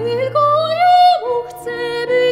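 Soprano singing a vocal romance with vibrato, accompanied by a Bechstein grand piano. Her voice rises to a held high note about a second in, then falls away, while the piano sustains low notes beneath.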